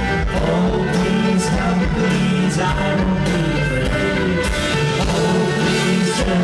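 Electric folk-rock band playing live: electric guitar, bass and drums with regular cymbal hits under a sung lead vocal.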